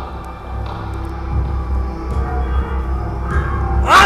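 Tense background music: a low sustained drone with long held tones, slowly getting louder.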